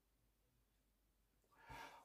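Near silence, then a short, faint intake of breath near the end.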